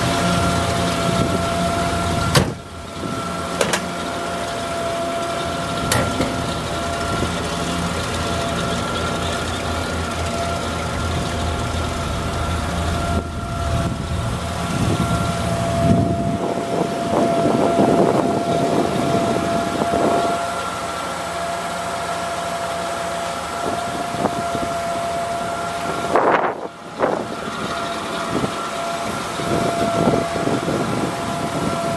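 Yale Veracitor 60VX forklift's engine idling, with a steady high whine over the low running sound. A few sharp clicks come through, and the low rumble fades about halfway through.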